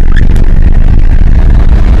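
Car engine running, a loud deep rumble.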